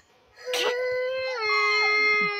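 A young girl crying out in one long held wail, starting about half a second in and dropping slightly in pitch partway through.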